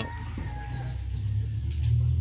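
A pitched animal call cutting off right at the start, then a steady low rumble with a light knock about half a second in.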